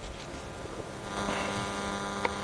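Steady electrical mains hum: a buzz of several even, steady tones that grows louder about a second in.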